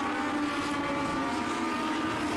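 Legend race cars, each running a Yamaha motorcycle engine, racing at high revs around a short oval. Their engines blend into one steady, high-pitched drone.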